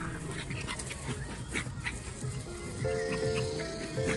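Small dogs playing, heard as a few faint short yips and barks scattered through the first half. Soft background music runs under them and becomes a little more prominent near the end.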